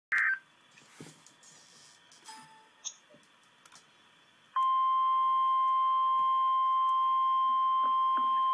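A short beep right at the start and a few faint clicks, then about four and a half seconds in a loud, steady single-pitched alarm tone comes on and holds: the weather-alert warning tone that comes before a National Weather Service severe thunderstorm warning.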